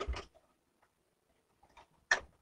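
A few light clicks and ticks from fabric being handled and set in place on a sewing machine, with the machine not running. There is one sharper click at the start, then faint ticks.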